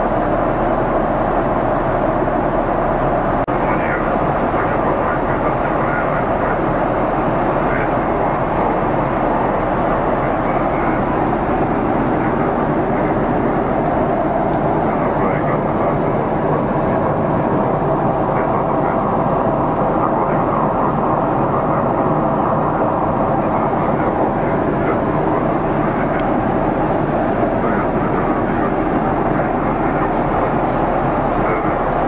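Steady cabin noise inside a Boeing 777-300ER airliner in flight: an even, unbroken rush of airflow and engine noise with no change in level.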